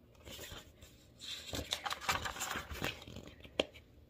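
The pages of a picture book being turned by hand: paper rustling and sliding for about three seconds, ending with a sharp flick of the page.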